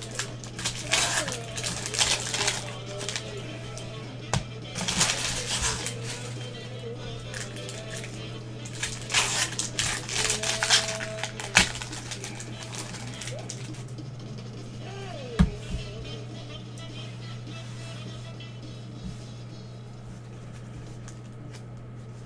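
Foil trading-card pack wrappers being torn open and crinkled, in several crackly bursts, the longest about nine to eleven seconds in, over a steady low hum.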